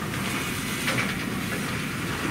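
Steady hiss of room background noise in a quiet pause, with a faint click about a second in.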